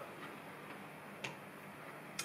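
Faint ticking and clicking of small game cubes being picked up and handled on a tabletop, with one sharper click about a second and a quarter in.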